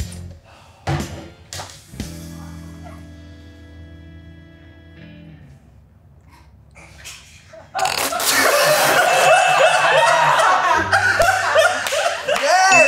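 A few knocks, then a sustained musical chord that fades out after about three seconds. About eight seconds in, loud laughter from several people breaks out and carries on to the end.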